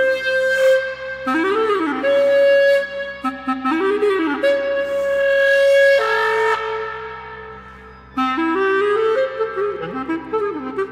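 B-flat clarinet playing quick arching runs that rise and fall between long held notes; about six seconds in it drops to a lower held note that fades away before the runs start again near the end. A steady low drone from the pre-recorded electronic track sounds underneath.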